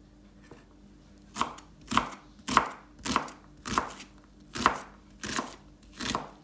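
Santoku knife chopping a red onion on a wooden cutting board. About seven sharp chops come a little over half a second apart, starting about a second and a half in.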